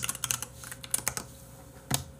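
Typing on a computer keyboard: a quick run of key clicks, then a pause and a single louder click near the end.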